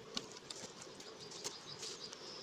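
Honeybees humming steadily around an open hive super, with several short clicks and scrapes of a metal blade against the wooden comb-honey section boxes.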